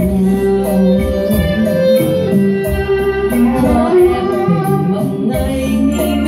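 A woman singing a slow Vietnamese song into a microphone over electronic keyboard accompaniment, amplified through a PA, with a steady drum-machine beat of about four high ticks a second.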